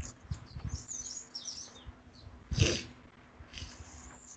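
Small birds chirping in quick high twitters, with one loud thump about two and a half seconds in, over a faint steady hum.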